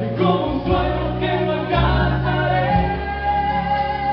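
Music: a slow song sung into microphones over a backing track, with voices holding long notes above a stepping bass line; one note is held for about the last two seconds.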